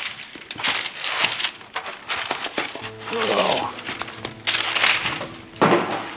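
A cardboard takeout box being opened and handled, making rustling and scraping noises in bursts, with background music coming in about halfway through.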